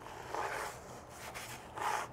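Bristle tire brush scrubbing a wet tire sidewall foamed with tire cleaner: two short, quiet scrubbing strokes, one near the start and one near the end.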